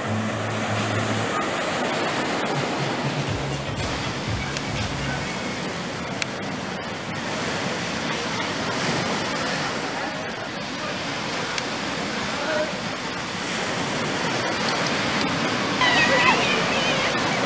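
Small waves breaking and washing up a sandy beach, a steady rushing noise, with voices of people in the background.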